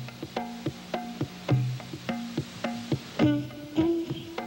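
Afro-Cuban hand drums playing a steady rhythm: about three strokes a second, sounding open tones at two or three different pitches, with a deep ringing low tone about every one and a half seconds. A longer held note enters near the end.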